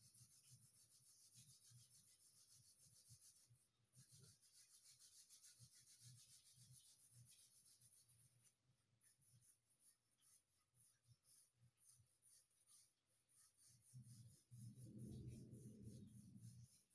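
Faint scratching of a blue coloured pencil shaded back and forth across drawing paper in quick, rapid strokes, steady at first and more broken after about eight seconds. Near the end a low, muffled rumble.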